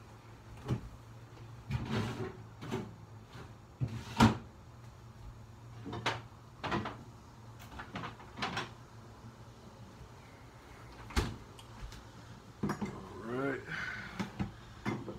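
Refrigerator door being opened and things shifted and knocked about inside it: a string of scattered knocks and clunks, the loudest about four seconds in, over a steady low hum.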